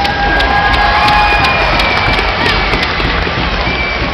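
Hockey arena crowd hubbub with music playing, and scattered sharp clacks of children's sticks on the puck and ice.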